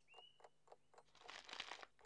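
Faint rustling of brown-paper parcels being handled, a little louder in the second half. A short, faint high squeak comes just at the start.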